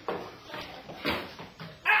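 A person's voice making a few short, high, wordless cries, then a loud 'Ah!' near the end.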